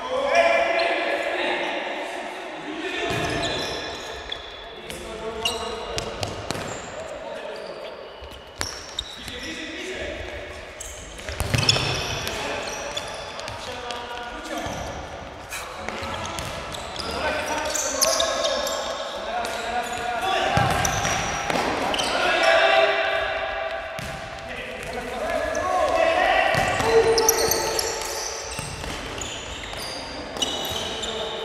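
Indoor football match in a large sports hall: players shouting to each other, with the sharp thuds of the ball being kicked and bouncing on the hard court, echoing in the hall.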